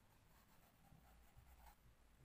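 Very faint scratching of a pen writing a word on a paper textbook page.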